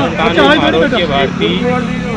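A man speaking Hindi into a handheld microphone, with a steady low hum underneath.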